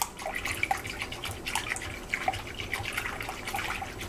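A wire whisk stirring yeast into lukewarm sugar water in a glass bowl: steady sloshing of the liquid with many small irregular ticks of the whisk. This is the yeast being dissolved to activate it.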